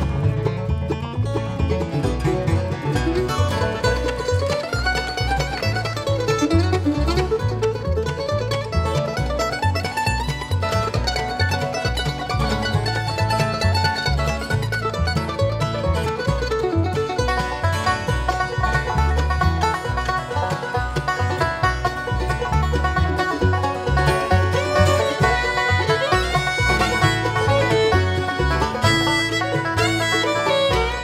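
Acoustic bluegrass band playing an instrumental break with no singing: banjo picking, then a mandolin lead, over acoustic guitar rhythm and upright bass that keeps a steady, even pulse.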